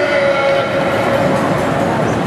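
A long horn-like tone over steady street and crowd noise. It dips slightly in pitch at first, is then held for about a second and a half, and fades before the end.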